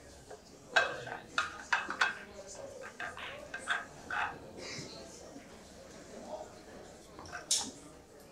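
Pool balls clacking together as a rack of ten-ball is set up by hand. A run of sharp clicks comes mostly in the first two seconds, a few more follow in the middle, and one loud click comes near the end.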